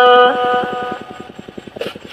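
Red Dao hát lượn folk singing: a long held sung note ends about a third of a second in, leaving a much quieter pause with a faint, fast, even pulsing, about ten beats a second, before the next phrase.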